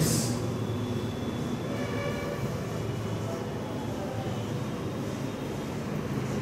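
Whiteboard marker writing on the board, with faint short squeaks, over a steady low hum.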